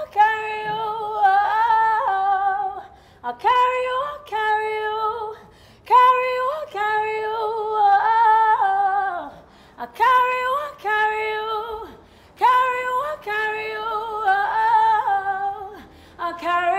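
A woman singing a cappella, with no instruments: several short sung phrases separated by brief pauses.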